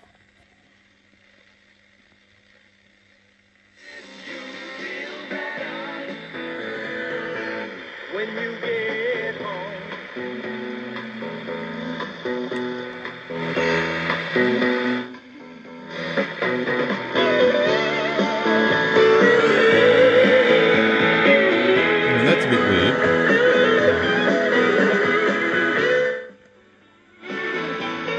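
Radio of a Sanyo G-2612H stereo music center playing music through its speakers, after a few seconds of faint steady hum. The music dips out briefly about halfway and again near the end.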